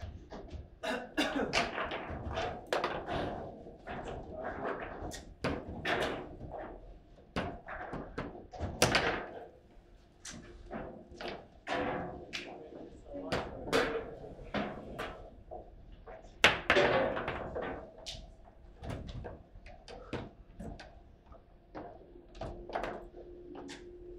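Foosball table in play: a fast, irregular run of sharp knocks and clacks as the players' figures strike the ball and the rods bang against the table, with the hardest knocks about nine and sixteen seconds in.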